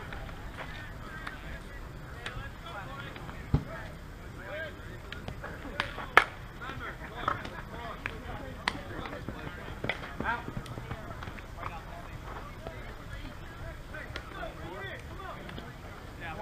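Distant men's voices calling and shouting, with a steady low wind rumble on the microphone and a few sharp clicks, the loudest about six seconds in.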